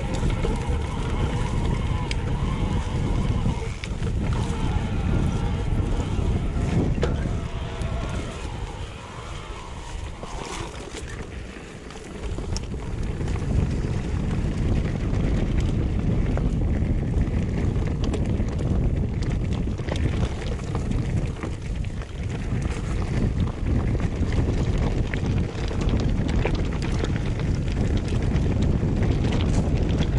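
Wind buffeting the bike-mounted camera's microphone, mixed with the rumble and rattle of a mountain bike's tyres and frame rolling down a dirt trail. It eases off for a few seconds about ten seconds in, then picks up again.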